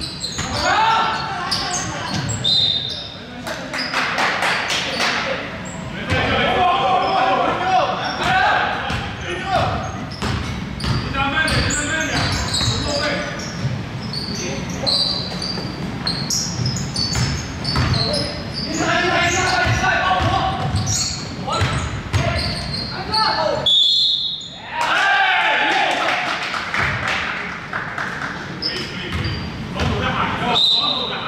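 Pickup basketball game on a hardwood gym floor: the ball bouncing and players calling out to each other, echoing in the hall.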